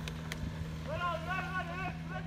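Engine of a small van stuck in snow, running at steady revs as it is pushed. A man shouts a long call over it in the second half.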